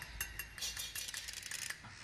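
A flock of birds calling, heard as many short, high chirps and clicks overlapping.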